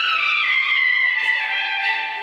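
Instrumental interlude of a Hindi film song's backing music, with no singing. A high melody line slides downward over the first second or so and then settles on a held note.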